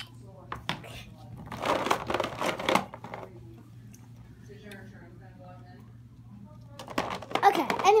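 Rustling and clattering of small plastic Littlest Pet Shop figures being rummaged through in a plastic carry case, loudest about two seconds in. Quiet children's voices come in between, and louder child speech starts near the end.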